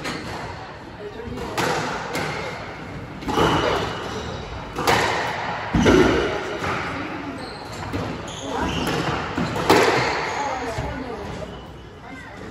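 Squash rally: the ball cracking off rackets and the court walls every second or so, each hit echoing in the enclosed court, with a heavier thud near the middle. The hits stop about ten seconds in as the point ends.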